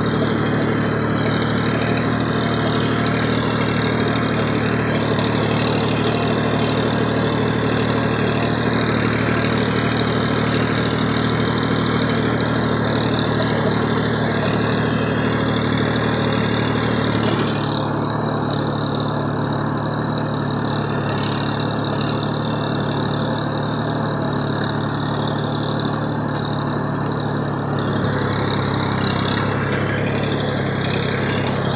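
Massey Ferguson tractor's diesel engine running steadily while the tractor is driven across a field, heard from the driver's seat. A little over halfway through the sound drops slightly and thins, then picks back up near the end.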